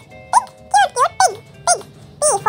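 Children's phonics song: a high-pitched voice singing short, sliding syllables over light backing music.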